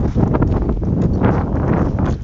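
Wind buffeting a handheld phone's microphone, a loud low rumble with irregular knocks and rustles.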